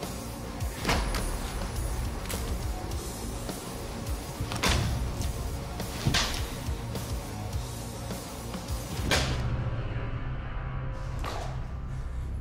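A Mesopotamian sickle sword chopping into a ballistics dummy: six sharp strikes a second or more apart, two of them louder than the rest, over a dramatic music score.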